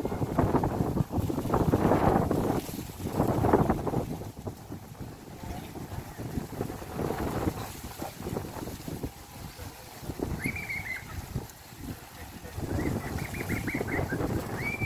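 Wind buffeting the phone's microphone as a low rumble, strongest in the first four seconds and gusting through the rest. Near the end a brief high wavering call sounds twice.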